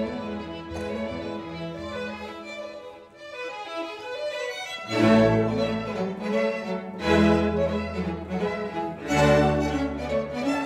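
String orchestra with violins and cellos, playing on instruments built by violin maker Peter Erben. A soft, sustained passage thins out before the middle, then loud, accented full chords with a deep bass come in about halfway and return twice.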